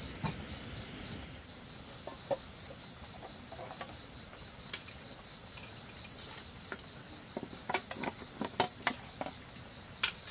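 Crickets chirring steadily. In the second half comes a run of sharp clicks and knocks, loudest near the end, as metal tongs lift bamboo tubes of rice out of an aluminium pot onto a woven bamboo tray.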